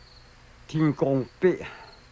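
Crickets chirping faintly in short, repeated high trills, with a man's brief exclamation in the middle.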